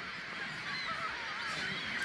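Gulls crying: several thin, wavering calls over a soft sea-like hiss.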